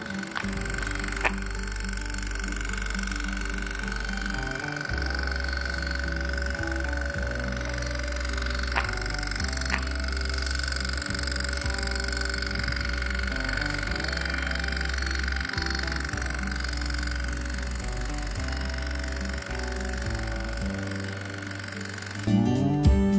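Background music with a changing bass line, over a steady high ringing tone from a small electromagnetic bell: the hammer buzzing rapidly against a brass gong while the circuit is switched on.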